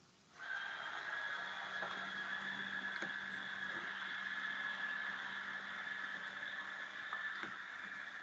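Steady hiss with a constant high whine and a low hum from an open microphone on a video call, starting about half a second in.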